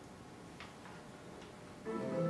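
Quiet room tone with a couple of faint clicks, then music with held notes starts near the end.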